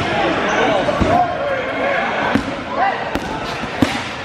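Dodgeballs smacking onto a hardwood gym floor and into players: several sharp hits, the loudest just before the end, over players' shouts and calls in a large gym hall.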